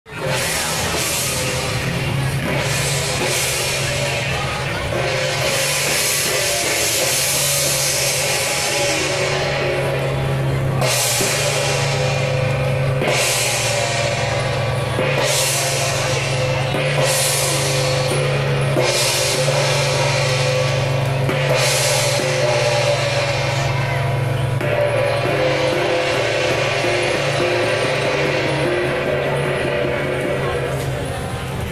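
Taiwanese temple-procession percussion: drums and large hand-held brass cymbals played continuously, with cymbal crashes recurring every second or two.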